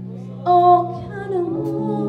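Live worship music: women's voices singing over sustained accompanying chords. A voice comes in with a loud held note about half a second in, and the chord changes near the end.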